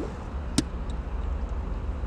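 Low steady rumble of a car, with one sharp click about half a second in as a knob on a vintage car radio is turned.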